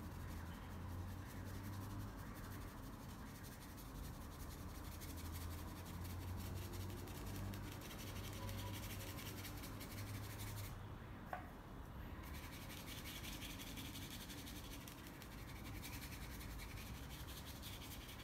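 Paintbrush bristles rubbing and scratching over textured canvas as acrylic paint is blended, over a low steady hum.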